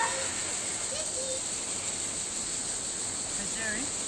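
Steady outdoor ambience with a high hiss, broken now and then by brief, faint snatches of distant voices.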